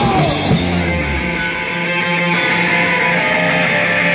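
Punk rock band rehearsing in a small room: a full-band hit at the start, then distorted electric guitar and bass notes held ringing while the drums drop out.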